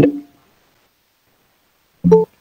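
A man's spoken word trailing off in the first moment, then near silence: a pause in his speech.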